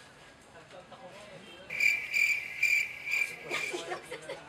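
A high, shrill insect trill that pulses about five times, starting a little under two seconds in and stopping just before the end. Faint voices murmur before it.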